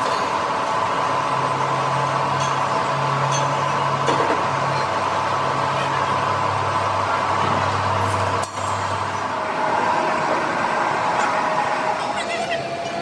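Steady running noise of workshop machinery with a constant hum. A lower hum comes in about a second in, drops in pitch partway through and stops near the end.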